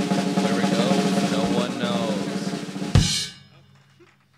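Band's drummer playing a fast snare drum roll over held notes from the other instruments, closing about three seconds in with one loud hit that rings out and fades.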